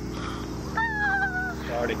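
A single high, wavering call that falls slightly in pitch and lasts under a second, over a low steady hum of traffic.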